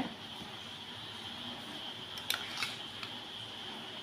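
Steady background hiss with a faint high whine, and two quick clicks in close succession about two and a half seconds in, then a fainter one.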